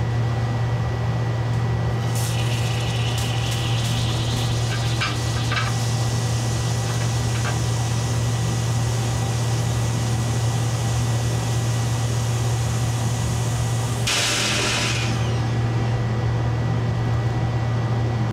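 Ozone generator humming steadily as ozonated oxygen bubbles through liquid ammonia, with a soft hiss of gas. There are a few light clicks about five seconds in, and a louder hiss lasting about a second about three-quarters of the way through.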